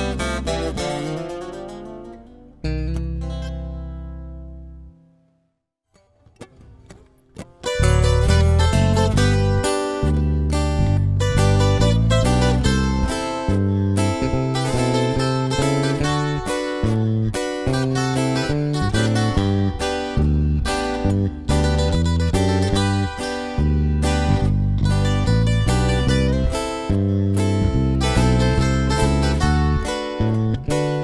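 Acoustic guitar band ending a song on a final chord that rings out and fades to near silence. A couple of seconds later the next song starts with a strummed-guitar instrumental intro over a deep bass line.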